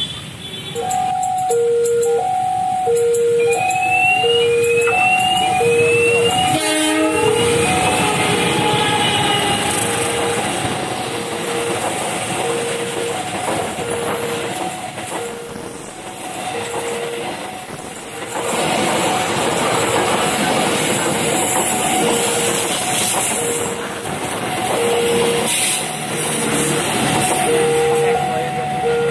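A railway level-crossing alarm sounds throughout, alternating a low and a high tone about once a second. From about eight seconds in, a passenger train hauled by a CC 201 diesel-electric locomotive passes close by: its wheels rumble and clatter over the rails, loudest in the second half.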